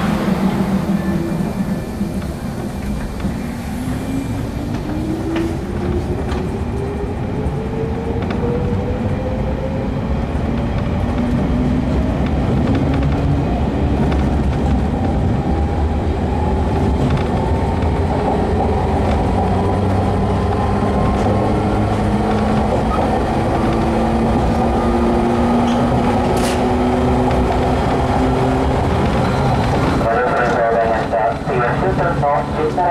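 JR 115 series electric multiple unit heard from inside a motor car: the traction motors and gears give a whine that rises steadily in pitch as the train gathers speed over the first twenty seconds or so, then holds, over the continuous rumble of wheels on rail.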